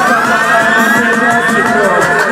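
Dub siren effect sweeping upward again and again, each rise echoing into the next, about three sweeps a second, over a dub rhythm played loud on the sound system.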